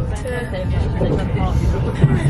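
Low, steady rumble of a Eurostar train carriage in motion, with a woman's voice talking over it.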